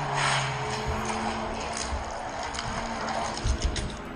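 Background music with held notes, over the continuous rattle of a die-cast Mario Kart kart's small wheels rolling down a plastic gravity track.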